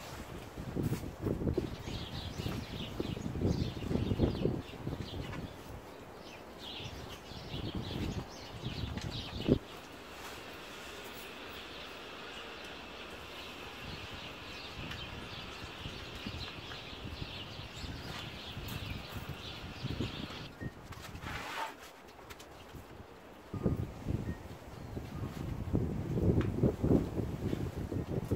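Rustling and light knocking as pinecones and sprigs are pushed in among the branches and into a woven basket around a potted Christmas tree, with birds chirping high and faint. A steady high hiss runs through the middle for about ten seconds and cuts off suddenly.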